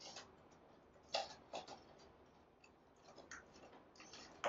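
A few faint, short clicks and light rustles as twiggy winterberry branches are handled and set into an arrangement, otherwise near silence.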